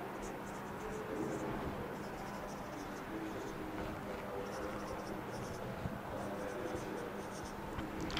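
Marker writing on a whiteboard: runs of short, high-pitched strokes with pauses between them, over a steady low hum.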